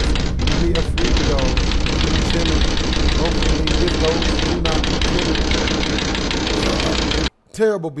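Rapid, loud, continuous banging and knocking, as on windows, in a dense irregular rhythm that the reactor mocks as a bad beat, with a man's voice now and then; it cuts off suddenly about seven seconds in.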